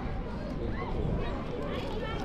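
Indistinct talk of passing adults and children, with short high voice sounds, over a steady low rumble.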